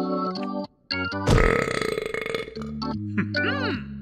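Cartoon background music with comic sound effects. There is a short break a little under a second in, then a loud rough vocal-type sound effect for about a second, and quick rising-and-falling gliding tones near the end.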